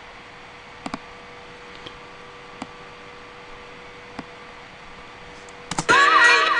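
A few sharp computer mouse clicks, spaced a second or more apart, over steady microphone hiss with a faint hum. Music playback starts just at the end.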